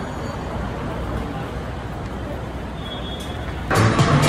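Steady city street traffic noise, an even wash of passing vehicles with no distinct events. About three and a half seconds in it cuts off abruptly to music and voices.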